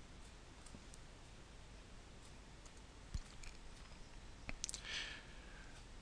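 Quiet room tone with a few faint computer mouse clicks: a soft one about three seconds in and two close together about a second and a half later.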